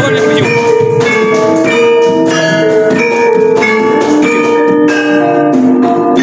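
Javanese gamelan ensemble playing: keyed metallophones (saron) and bonang kettle gongs struck in a steady, continuous pattern, each note ringing on into the next.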